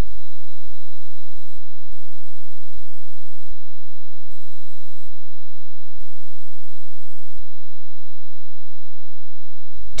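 Steady low hum with a thin, steady high-pitched whine and no voices or music: the background noise of the recording, with a few small ticks.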